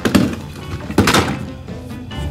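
A plastic snap-together toy car set down into a cardboard box of toys: two knocks about a second apart as it lands among the other toys, over background music.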